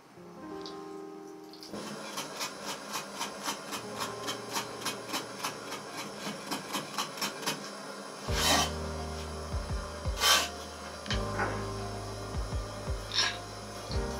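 Kitchen knife mincing garlic on a wooden cutting board: a steady run of quick chops, about four a second, for about six seconds. Then a few louder single strokes of the blade.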